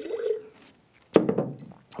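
Wine spat into a ceramic spit jug, a short liquid splash, then the jug knocked down onto the table a little past a second in.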